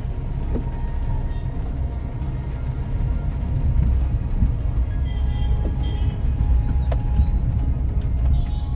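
Steady low rumble of a car driving slowly, heard from inside the cabin, with faint music over it and a sharp click about seven seconds in.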